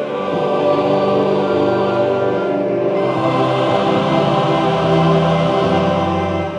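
Choir singing gospel music in long held notes.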